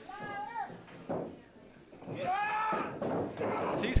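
Short shouted voice calls in a wrestling hall, then one sharp, loud impact near the end: a strike landing between wrestlers in the ring.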